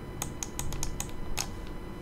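About seven light, irregular clicks and taps from computer input: keystrokes or a stylus tapping a pen tablet.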